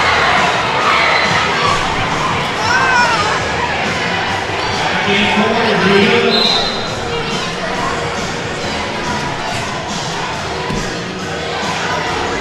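A large crowd of schoolchildren shouting and cheering in a gymnasium, a continuous din of many voices with scattered individual shouts rising above it.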